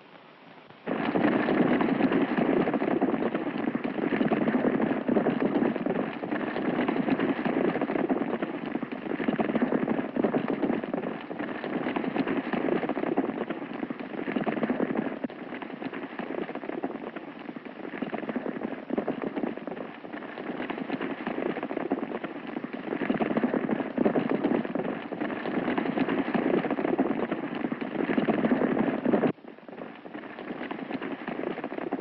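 Hoofbeats of a large group of horses galloping together, a dense, rattling clatter that starts suddenly about a second in and cuts off sharply near the end.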